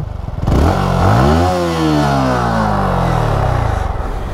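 Yamaha MT-15 V3's 155 cc single-cylinder engine revved once while standing, heard close to the exhaust. It rises from a pulsing idle in about a second, then falls back more slowly to idle near the end.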